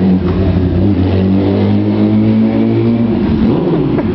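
Sport motorcycle engine pulling away at steady revs, holding one even engine note, which fades out about three seconds in.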